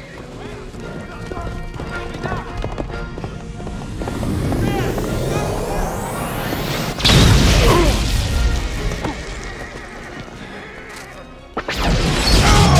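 Film action sound-effects mix over music. A rising whoosh builds for several seconds and breaks into a loud sudden blast about seven seconds in, with horses whinnying. After a fade, another loud burst comes just before the end.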